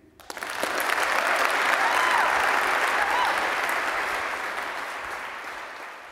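Audience applause in an auditorium. It breaks out just after a talk ends, swells over the first couple of seconds, then slowly dies away.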